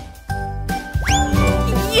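Light children's background music with a tinkly, chiming character. About a second in, a quick rising whistle-like sound effect sweeps up in pitch.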